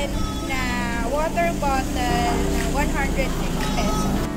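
A voice singing, likely part of a backing song, with notes that glide and are held briefly. Under it runs a steady low hum.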